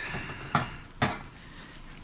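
Eggs sizzling faintly in a frying pan, with two light clicks of a plastic spatula against the pan, about half a second and a second in.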